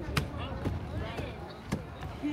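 Chatter of passers-by, several voices overlapping with no one voice standing out, broken by two sharp knocks, one just after the start and one near the end.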